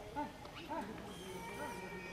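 Voices of people talking in the background, no words clear, with a thin steady high tone joining about halfway through.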